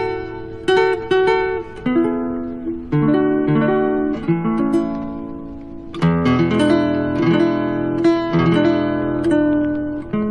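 Instrumental country music with no singing: a guitar picking a melody of single plucked notes over a bass line. The accompaniment grows fuller about six seconds in.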